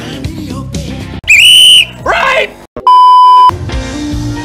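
Hip-hop music cuts off abruptly about a second in. A very loud, high squeal follows, then a falling cry, then a brief silence and a steady censor-style bleep lasting about half a second. Rock music comes in near the end.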